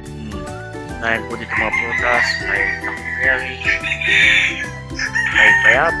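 A rooster crowing loudly, with chickens clucking, over steady background music.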